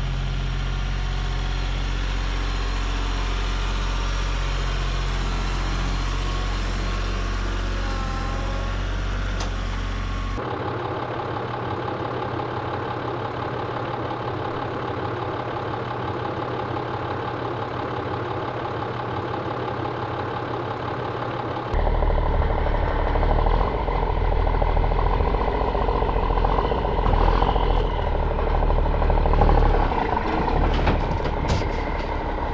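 A compact tractor's diesel engine running steadily. After a cut about ten seconds in comes a different, quieter steady sound, and after another cut a little past twenty seconds a louder engine idles, the school bus's engine.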